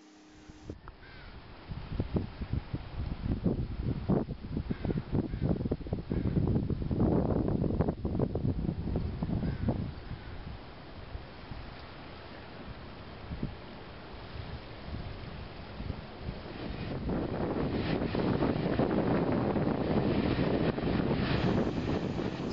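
Wind buffeting the camera microphone in uneven gusts, heaviest for several seconds early on and again towards the end, with a quieter lull between.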